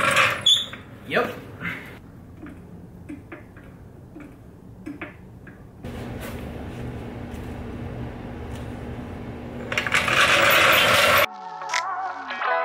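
Hydraulic floor jack being pumped to lift the front of a car: a string of light clicks, two or three a second. After a change to a steady hum, a loud rushing noise lasts about a second and stops abruptly, and guitar music starts.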